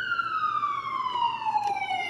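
A wailing siren: its pitch falls slowly through one long downward sweep.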